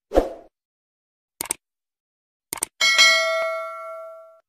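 Sound effects of a subscribe-button intro animation: a short low pop as the button appears, two quick double mouse-clicks, then a notification bell ding that rings several tones and dies away.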